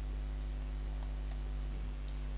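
A few faint computer keyboard keystrokes, typing the end of a line of code, over a steady low hum.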